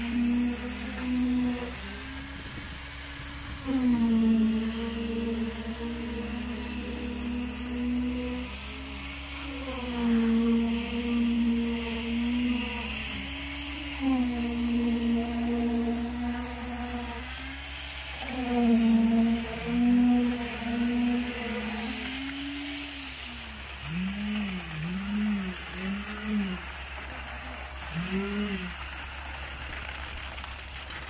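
Electric concrete poker vibrator running in wet concrete, its whine held for a second or two at a time and sliding up and down in pitch between holds. A steady low engine drone runs underneath.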